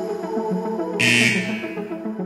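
Background electronic music with a steady beat, with a loud interval-timer buzzer about a second in, lasting nearly a second: the signal that the work interval is over and rest begins.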